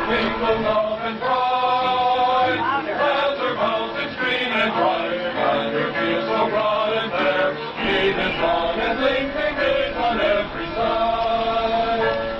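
A congregation singing together, with long held notes.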